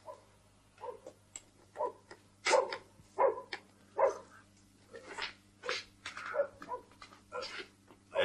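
A dog barking repeatedly in a quick, irregular series of short barks, louder from about two and a half seconds in.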